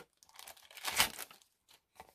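Thin clear plastic bag crinkling and rustling as it is handled and opened, with the loudest rustle about a second in.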